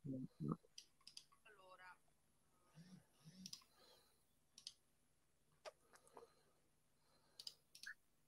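Near silence with faint, scattered computer mouse clicks, irregular and several seconds apart, as someone clicks through an app's menus looking for a screen-share option. A few faint, muffled murmurs come in the first few seconds.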